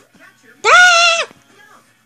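A single high-pitched vocal cry held at one pitch for under a second, from about half a second in.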